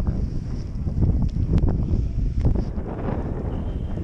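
Wind buffeting the camera microphone on an open chairlift in a snowstorm: a steady low rumble, with a few brief clicks in the middle.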